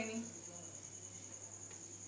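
Quiet room tone: a steady, thin high-pitched whine over a low hum, with a faint tick near the end.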